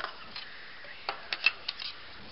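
Plastic Lego pieces clicking as they are handled and snapped together, a handful of irregular sharp clicks with the loudest about one and a half seconds in.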